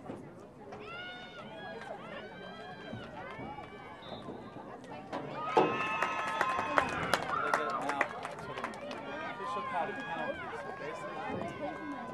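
Spectators and players shouting at a girls' field hockey game, high-pitched calls rising and falling. About five and a half seconds in, the shouting swells into a louder burst of cheering with sharp cracks mixed in, then eases back.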